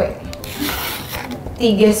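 A carrot being shaved with a hand peeler on a cutting board: a rough, scratchy rasping.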